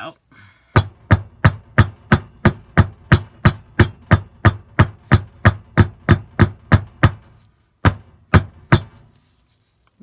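A wooden loaf soap mold full of freshly poured soap batter being knocked down repeatedly on a countertop to tap air bubbles up to the surface. It goes as a steady run of about twenty sharp knocks, roughly three a second, then a short pause and three more.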